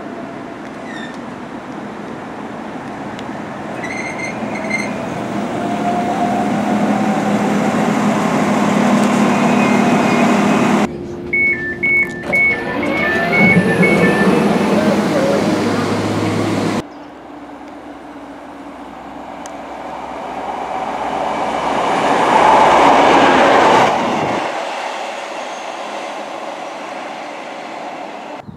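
A Northern Class 195 diesel multiple unit drawing into a platform, its running growing louder. Next comes a two-tone alternating beeping of train door warning alarms. Last, a Class 153 diesel multiple unit's running swells as it approaches and then cuts off.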